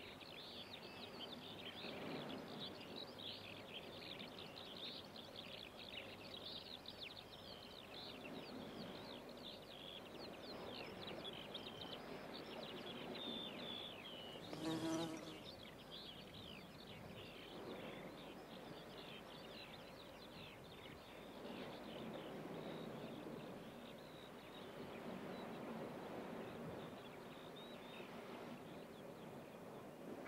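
Faint outdoor ambience of insects buzzing, with a continuous high twittering of small birds. A short, louder call stands out about halfway through.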